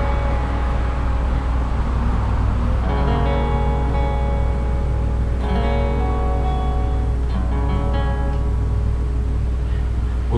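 Acoustic guitar chords strummed and left to ring out, a new chord struck about three seconds in and another a little past halfway. Underneath runs a steady low rumble, which the player suspects is the stage itself rumbling.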